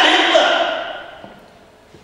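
A man's raised voice through a microphone: one loud, drawn-out word that trails off over about a second.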